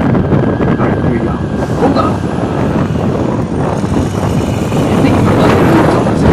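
A six-wheeled Brewster snowcoach's engine running loudly and steadily as the bus drives past close by.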